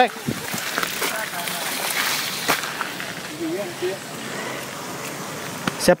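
Steady rushing noise of mountain bikes riding a dirt trail, with a few sharp knocks and a faint brief voice about halfway through.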